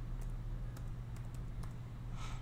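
A few separate keystrokes on a computer keyboard as a short stock ticker is typed, over a steady low hum.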